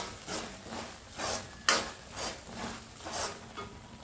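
Slotted metal spatula scraping and stirring a crumbly mix of ghee-roasted gram flour (besan) and milk around a steel kadhai, in short strokes about twice a second. This is the stage where milk is worked in a spoonful at a time to make the mixture grainy.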